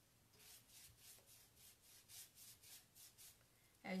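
Faint, scratchy strokes of a paintbrush dry-brushing paint across a painted dresser drawer front, about three or four strokes a second.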